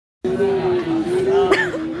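A person's voice holding one long, slightly wavering high note, with restaurant chatter behind it.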